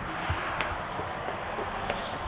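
Steady outdoor background noise with a few faint clicks.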